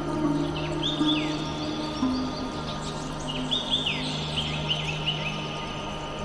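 Slow ambient meditation music, a steady low drone under soft held notes, layered with birdsong: clusters of short chirps that fall in pitch, about a second in and again from about three to five seconds in.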